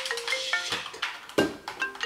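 A phone ringtone playing a quick marimba-like melody of short notes at shifting pitches, an incoming call.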